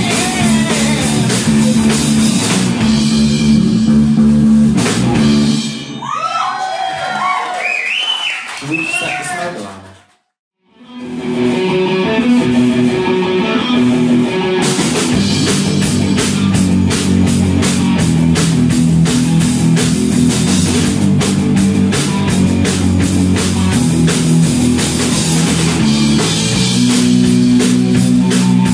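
Live rock band playing: electric guitars, bass and drum kit. About six seconds in the band thins out to a few bending, sliding high notes, there is a moment of silence near the ten-second mark, and then the full band comes back in with steady cymbal beats.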